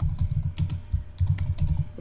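Computer keyboard typing: a quick run of keystrokes as a short word is typed.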